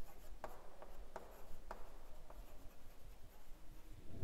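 Chalk writing on a blackboard: faint scratching with a handful of light, sharp taps as the chalk strikes and moves across the board.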